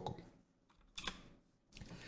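A single brief click from a computer keyboard about a second into a quiet pause.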